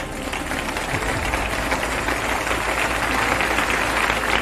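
Live audience applauding, building up over the first second and then holding steady.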